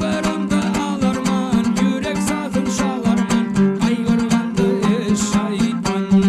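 Live Turkish music: an instrumental passage of rapidly plucked bağlama (saz) over a steady low held note.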